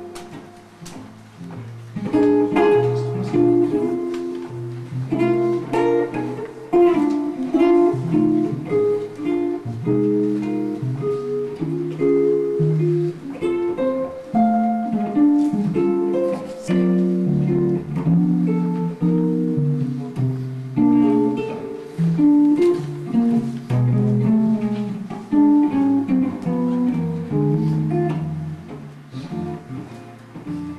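Solo archtop guitar played fingerstyle, chords and melody notes moving together; the playing thins out at the start and picks up again about two seconds in.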